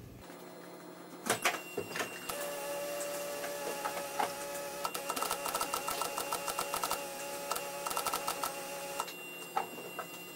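Starter motor cranking the 1982 Toyota Corolla's four-cylinder engine for about six or seven seconds, a whine with rapid clicking that stops abruptly, after a couple of sharp clicks as the key is turned. The owner takes it for a starter that is going out.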